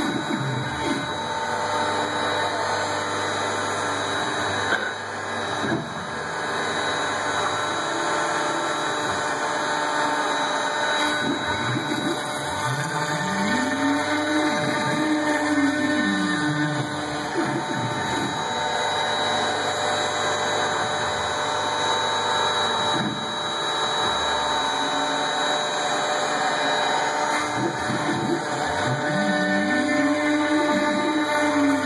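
CNC foam router machining a foam block: the spindle runs with a steady whine and cutting noise, while the axis drive motors whine up and down in pitch as the head speeds up and slows down between moves.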